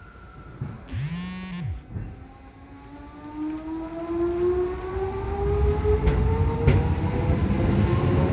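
Electric commuter train pulling away from a standstill: its traction motors give a whine that climbs steadily in pitch and grows louder as it accelerates. A short swooping tone is heard about a second in.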